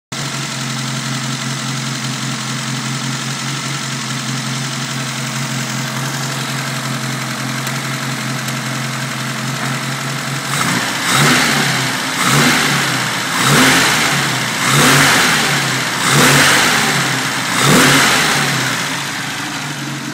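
A Mini's 1293cc A-series four-cylinder engine idling steadily, then blipped six times in quick succession about halfway through, each rev rising and dropping back to idle.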